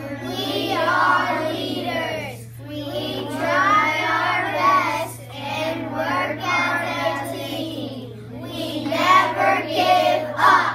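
A class of young children chanting their class mission statement together in unison, in phrases with short breaks. A steady low hum runs underneath.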